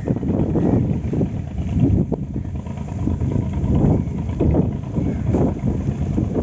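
Wind buffeting the microphone: a loud, uneven low rumble that rises and falls irregularly.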